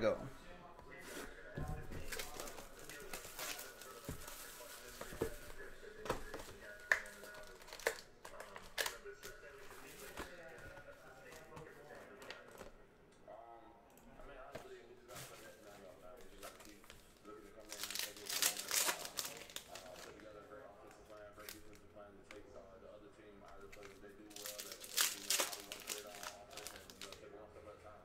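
Trading-card box packaging being handled and its wrapper torn and crinkled. There are scattered clicks early on and two louder spells of crinkling, about 18 s and 25 s in.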